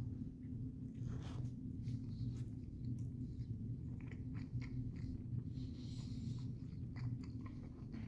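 A person biting into and chewing a cheeseburger, with faint scattered wet mouth clicks. A steady low hum runs underneath.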